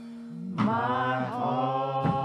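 Gospel praise team singing with organ accompaniment. A held organ chord sounds alone at first, then the voices come in together about half a second in and hold a long note with vibrato over it.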